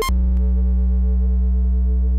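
A brief click, then a steady, low, buzzing electronic tone held without change: a flatline-style sound effect standing for a flat EEG with no brain waves.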